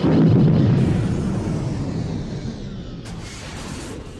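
A heavy boom sound effect that hits suddenly, then a rumble fading away over about three seconds.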